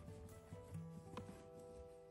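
Quiet background music with a few held notes, and faint rubbing of an oil pastel stick on paper with a small click about a second in.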